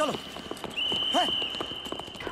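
Horse hooves clip-clopping at a brisk pace, with a steady high-pitched tone sounding in two stretches and a short call about a second in.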